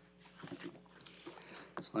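Quiet room tone at the lectern microphone, with a faint steady hum and a few soft handling or shuffling sounds about half a second in. A man starts speaking just before the end.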